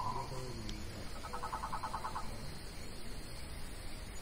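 A bird calling: a held note that fades out just after the start, then, about a second in, a rapid run of short pulsed notes, about ten a second, lasting about a second.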